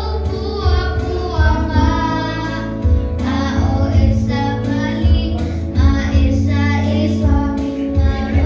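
Children singing together into handheld microphones over amplified accompaniment with a steady, pulsing bass beat.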